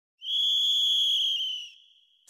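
A single long, steady blast on a whistle, the apito that signals the start of a bumba-meu-boi toada, fading out after about a second and a half.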